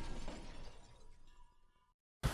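Tail of a breaking-glass crash, a television screen smashed by a sledgehammer, dying away and fading out about three-quarters of the way through. A faint thin ringing tone lingers a little longer and cuts off just before the end.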